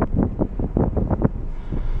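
Inside the cabin of a 2011 Caravan with a 2.0 common-rail TDI diesel, driving: low running and road noise with wind on the microphone. A quick, irregular run of knocks and rattles fills the first second or so.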